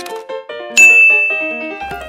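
A single bright ding of a bell-like chime about three quarters of a second in, ringing on and fading over about a second. Light background music of short melodic notes plays throughout.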